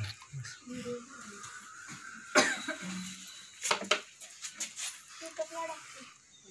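Low, intermittent voices of people talking, with a short, sharp noisy burst about two and a half seconds in and a few more about a second later.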